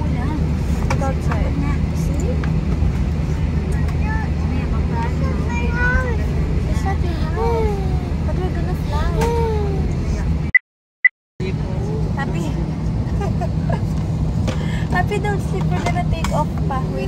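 Airliner cabin noise: a steady low hum of the jet's engines and cabin air with the aircraft under way, faint voices over it. The sound cuts out completely for about a second, about ten seconds in.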